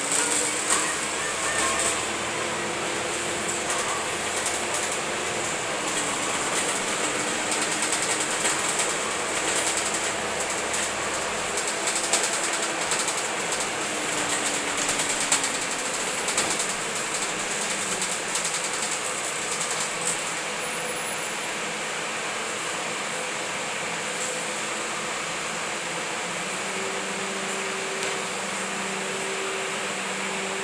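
Interior noise of a Volvo Olympian 12 m double-decker bus heard from the upper deck. A diesel engine drone rises and falls in pitch through the first half, with frequent clicks and knocks from the body. It settles to a steadier hum in the last third.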